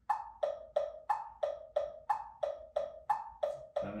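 Metronome clicking steadily at 180 beats per minute, about three short pitched clicks a second.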